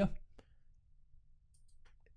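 A few faint, separate computer mouse clicks against near silence.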